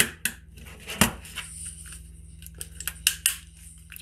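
Plastic front cover of an Allen-Bradley C16 contactor being pried loose with a small screwdriver: a scatter of sharp plastic clicks and snaps, the loudest about a second in and a quick cluster near the end.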